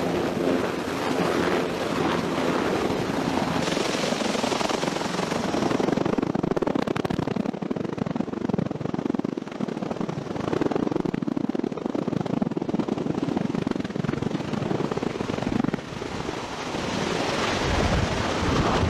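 Aircraft rotor noise on a carrier flight deck: a loud, continuous rush with a fast beating, as a V-22 Osprey tiltrotor hovers close by and a helicopter's rotors turn on deck.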